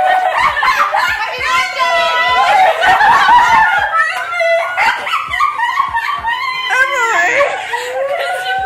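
Women's voices and laughter, with no clear words, filling the whole stretch.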